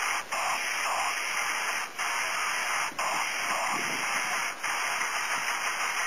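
Steady static-like hiss of recording noise, cut by brief dropouts about once a second.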